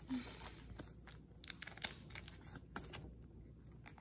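Yu-Gi-Oh trading cards being handled and flipped through by hand: faint, irregular clicks and rustles as the cards slide over one another.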